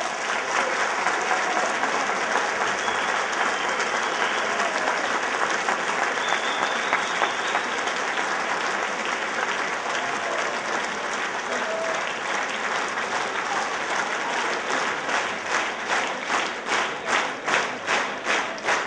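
Large audience applauding. Near the end the clapping falls into a steady rhythm of about two and a half claps a second.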